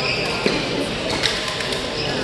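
Badminton rally: three sharp racket strikes on the shuttlecock, the second about half a second after the first and the third most of a second later, over echoing chatter in a large sports hall. A brief shoe squeak on the court floor comes right at the start.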